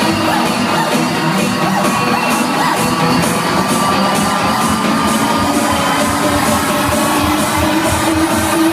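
Electronic dance music from a live DJ set playing loud over a club sound system, with a steady beat.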